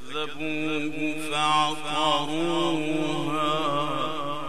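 A male qari's voice in melodic (mujawwad) Qur'an recitation: one long, ornamented line sung through a microphone, with wavering turns, swelling to its loudest about a second and a half in.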